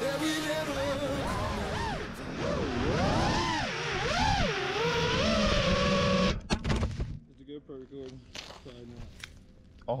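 FPV freestyle quadcopter's brushless motors whining in flight, their pitch swooping up and down with the throttle, cutting off suddenly about six seconds in. After that it is much quieter, with faint voices.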